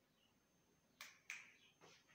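Near silence broken by three sharp clicks: two close together about a second in, and a softer third near the end.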